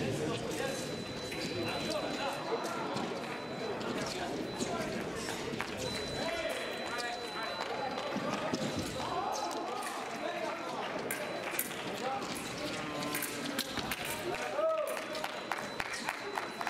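Indistinct chatter of several people echoing in a large hall, with scattered faint clicks and a thin, steady high tone that comes and goes.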